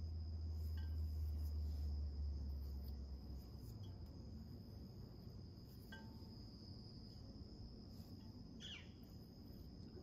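Faint scrapes and small clicks of a hand hole-cutting tool carving through a leather-hard clay sphere, over a steady high-pitched whine and a low hum that fades out about three and a half seconds in.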